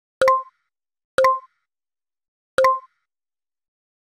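Three identical click sound effects from a like-subscribe-bell button animation, each a sharp click with a brief pitched pop after it, the second about a second after the first and the third a little over a second later.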